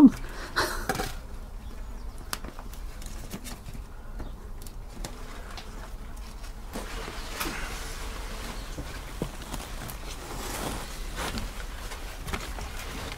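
Scissors snipping and the plastic film of a compost grow bag rustling as a flap is cut in it: scattered small clicks, then two longer soft rustles, after a short laugh at the start.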